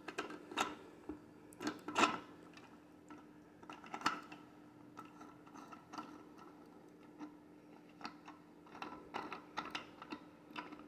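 Plastic puzzle box's turning knob and inner locking mechanism clicking as it is twisted to close the box: light, irregular clicks, coming more thickly near the end.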